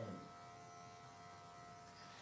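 Faint steady hum of a Wahl Arco cordless clipper with a number 30 blade, edging the hair along a cocker spaniel's lip line.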